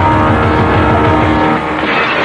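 A van's engine running with a steady drone and low throb. It cuts off about a second and a half in, giving way to a brief rushing noise.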